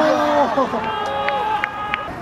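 Drawn-out shouts at a soccer match: one long low call, then a higher held call about a second in, with a few sharp knocks under it.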